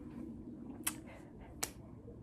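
Two short, sharp clicks about three-quarters of a second apart, over faint low background noise.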